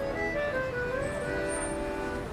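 A street musician's accordion playing a melody of held notes over chords, coming in suddenly at the start, with traffic rumbling low underneath.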